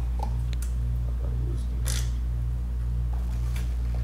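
A few faint clicks and taps from a paper drink cup and food being handled at a table, the clearest about two seconds in, over a steady low hum.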